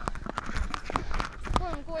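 Irregular clicks and light knocks from walking: footsteps and a handheld camera being jostled.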